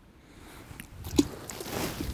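Light handling noises as hands work at a landing net: a few soft clicks and rustles, with a faint hiss building toward the end.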